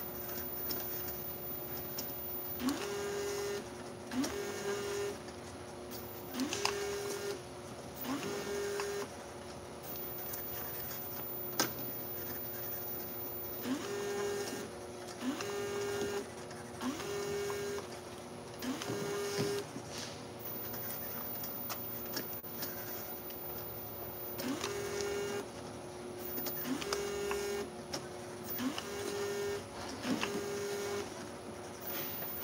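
Automatic jar-labeling machine running: a steady hum from the conveyor, with a short whirring burst as each jar is labeled. The bursts come about every one and a half seconds, in three runs of about four with pauses between.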